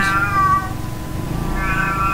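A domestic cat meowing noisily, twice. One meow trails off within the first second, and another begins near the end.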